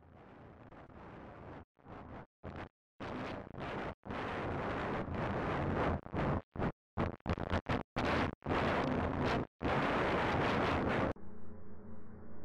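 Harsh static-like noise from the film's sound design swells up from faint, then stutters on and off in abrupt bursts and grows loud. Near the end it cuts off suddenly, leaving a low ambient music drone.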